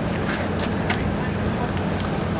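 A steady low engine hum from a boat, with faint indistinct voices of people nearby.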